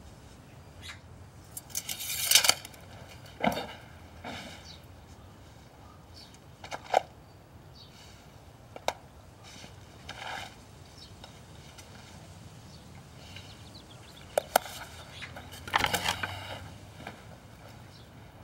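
Scattered short scrapes, rustles and taps of hand work with a notebook, pencil and tools, over a faint steady background. The loudest cluster is about two seconds in and another comes near the end.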